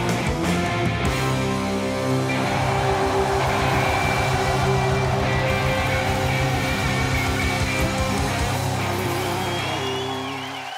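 Live rock band playing loud with electric guitars, bass and drums. From about two seconds in, the band holds one long chord over rapid drum hits, the closing chord of a song.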